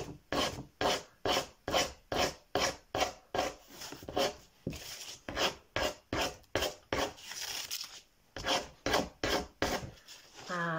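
A pointed tool scratching the black top layer off scratch-art paper in quick repeated strokes, about two or three a second, with a short pause about eight seconds in.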